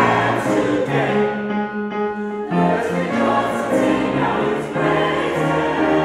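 Mixed-voice choir of men and women singing in harmony, holding chords that move from one to the next every half second or so at a steady volume.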